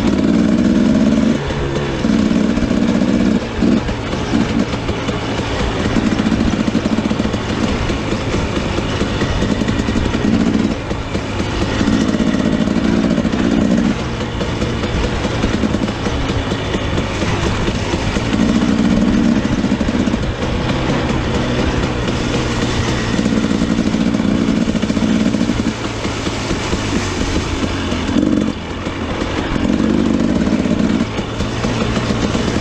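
A 2017 Husqvarna TE 250 two-stroke dirt bike engine being ridden, swelling in repeated bursts of throttle and dropping back between them at irregular intervals of a few seconds.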